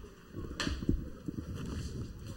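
Pitch-side match ambience of a football game: a low, uneven rumble with one sharp knock a little over half a second in and a few fainter knocks after it.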